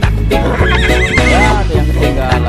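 A horse whinnying for about a second, a high quavering call that starts about half a second in, over background reggae music with a steady beat.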